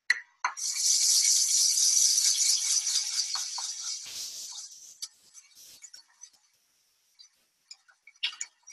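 Stiff-bristled dish brush scrubbing baking soda and cleaner around the inside of a stainless steel saucepan to lift stuck-on residue. The scrubbing starts about half a second in, is loud and gritty for a few seconds, then eases off into fainter scrapes and small clicks.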